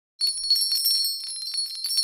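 Sleigh bells jingling in quick, irregular shakes with a high ringing, starting a moment in.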